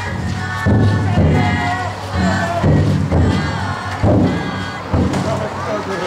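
Big taiko drum inside a futon daiko festival float, struck in deep booming beats roughly once a second, under the loud shouted chant of the bearers carrying it.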